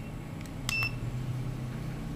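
Digital multimeter on its continuity setting giving one short, high beep about two-thirds of a second in, just after a click. A low steady hum runs underneath.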